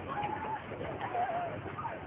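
Outdoor background hiss with a bird calling twice, each call short and wavering.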